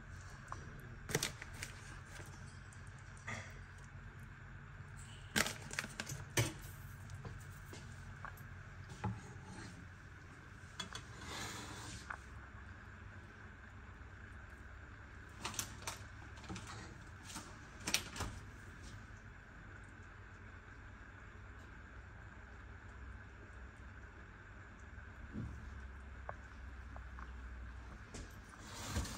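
Light kitchen handling noises: scattered clicks and knocks of a spoon and dishes, with a short rustle near the middle, over a steady low hum.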